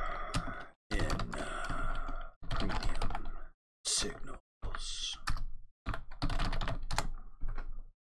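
Computer keyboard typing in short bursts of clicks, with abrupt dead silences between the bursts.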